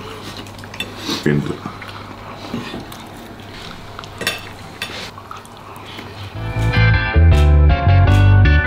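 Knife and fork clinking and scraping against ceramic plates as two people eat. About six seconds in, a guitar tune starts and takes over.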